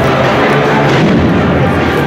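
Loud, steady noise of a street crowd, with a deep rumble underneath.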